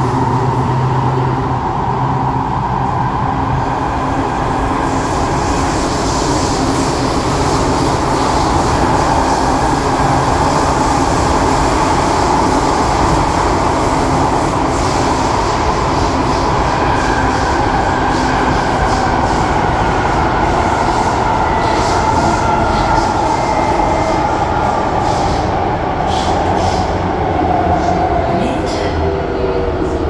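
Interior running noise of a C751B metro train in motion: a steady rumble of wheels on rail with an electric motor whine, heard inside the carriage. Near the end the whine falls in pitch and a few clicks come through.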